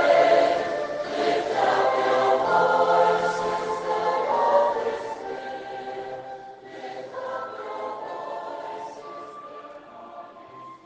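Choral music: a choir singing sustained, slow-moving notes, fading down over the second half.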